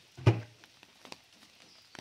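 A single dull thump about a quarter second in, followed by a few faint clicks.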